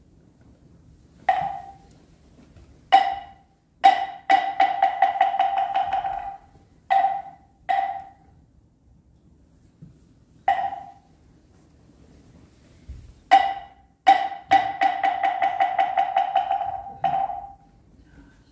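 A moktak (Korean Buddhist wooden fish) struck with its mallet, giving hollow, pitched wooden knocks. It is played as single strokes broken by two long rapid rolls, keeping time for prostrations.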